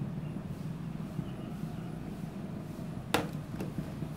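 A glass of beer set down on a ledge with one sharp clack about three seconds in, over a steady low rumble of background noise.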